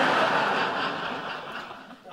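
Studio audience laughing, loud at first and fading away over about two seconds.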